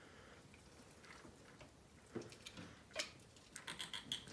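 Near quiet, with a few faint clicks and taps about two and three seconds in and a small cluster near the end; no engine is running.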